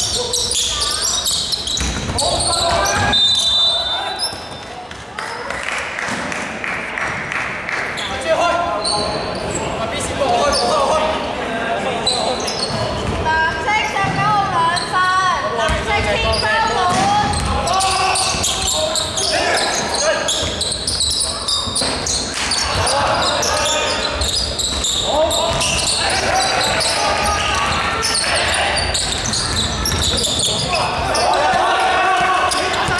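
Basketball game sounds in a large, echoing sports hall: the ball being bounced and dribbled on the wooden court, with players' voices calling out over it.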